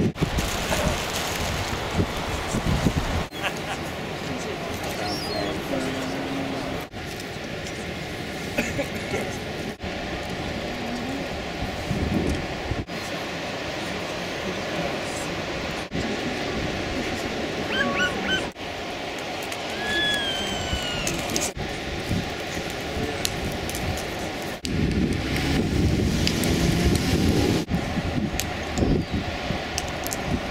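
Outdoor beach ambience of wind, surf and indistinct crowd chatter. The sound changes abruptly every few seconds where short clips are spliced together, and a few short high-pitched calls come about two-thirds of the way through.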